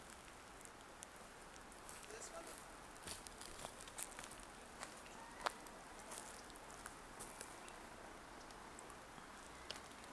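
Quiet forest ambience with faint, scattered small clicks and crackles, the sharpest about halfway through.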